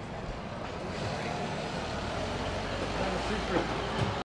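A car pulling away, its low engine rumble growing louder about halfway through, over street noise, with faint voices near the end.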